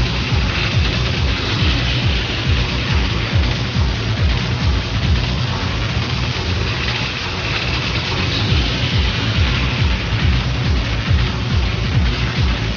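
Techno DJ mix playing loud and unbroken, driven by a steady, pounding kick-drum beat with a bright hissing layer of hi-hats above.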